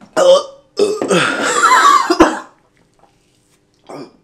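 A man's loud belch after gulping a drink: a short burp, then a long drawn-out one of nearly two seconds with a wavering pitch, with a sharp click near its end.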